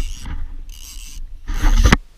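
Handheld action camera jostled in wind: a steady rumble of wind on the microphone with scraping and clattering, and a loud rough clatter near the end as the camera swings about.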